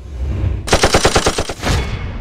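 Rapid burst of automatic gunfire used as an intro sound effect: about a dozen quick shots in under a second, starting partway in, over a low rumble.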